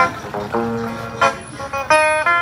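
Electric guitar played through a small portable loudspeaker, picking out a bolero melody in single notes that ring out, with a sharp new note near the end.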